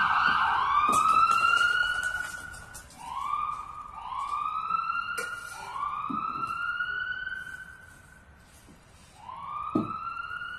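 Siren-like whoops: a tone that sweeps up and holds for a second or two, repeated about five times with some overlapping and a short lull near the end. A sharp knock sounds just before the end.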